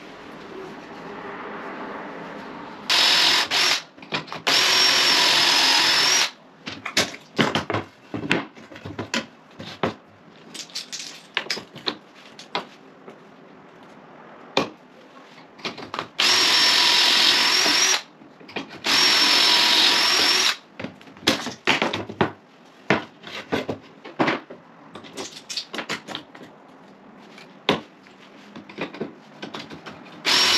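Cordless drill boring pocket holes through a pocket-hole jig into timber rails, in four runs of one to two seconds with a steady high whine. Between the runs come short clicks and knocks as the jig and timber are handled.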